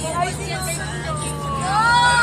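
Steady low drone of a moving bus heard from inside the cabin, with passengers' voices over it; one voice rises and falls in pitch near the end.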